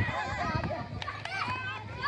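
Many schoolboys shouting and calling to one another at once while playing football, their high voices overlapping so that no single voice stands out.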